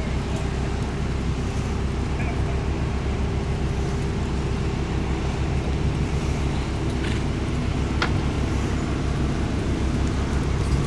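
Steady low outdoor rumble with faint voices in the background, and a short sharp click about eight seconds in.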